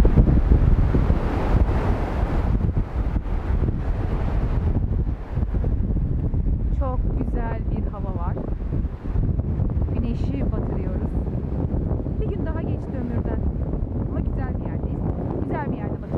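Strong wind buffeting the microphone in a loud, steady rumble, over small waves washing onto a pebble shore.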